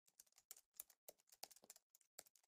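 Faint, quick run of keyboard-typing clicks, about eight a second and slightly irregular: a typing sound effect laid under the title lettering as it appears.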